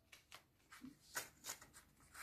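Near silence broken by a few faint, soft paper sounds of a magazine page being turned, the clearest a little over a second in.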